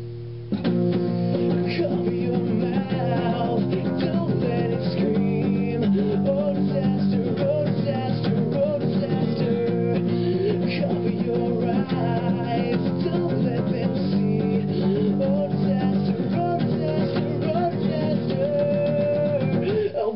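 Acoustic guitar played as an instrumental passage of a song, chords ringing on steadily. It comes in about half a second in, after a brief dip.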